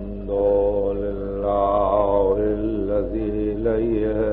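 A man's voice chanting in long, drawn-out held notes, with a steady mains hum beneath, on an old, narrow-band tape recording.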